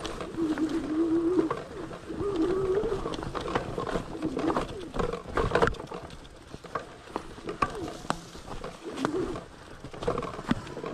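Fat-tire electric mountain bike rattling and clattering over a rough, bumpy woodland trail, with a burst of knocks about five seconds in. A low, wavering tone rises and falls several times underneath.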